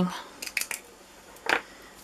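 Small plastic embossing powder pot and its lid being handled and set down on a craft mat: a few light clicks about half a second in, then one sharper tap about a second and a half in.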